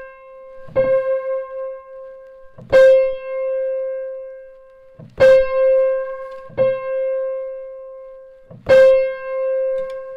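One C on a Bechstein grand piano struck repeatedly, about every two seconds, each strike left to ring while the tuning lever moves the pin: a tuner setting the unison strings as pure as he can, reducing the beating.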